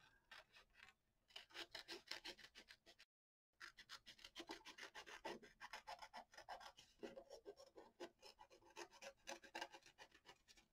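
Hand scissors snipping through a sheet of paper, cutting out a traced shape: a fast run of short, faint snips, several a second, with a brief break about three seconds in.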